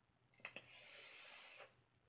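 A faint click, then a steady hiss of about a second as air is drawn through a vape's mouthpiece and atomizer on the inhale.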